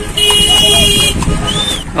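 A vehicle horn honks once, held for about a second, over steady street traffic noise.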